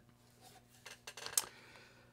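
Faint handling noise: a few small clicks and light rubbing as arms settle onto an electric guitar's body, with one sharper click about a second and a half in, over a steady low hum.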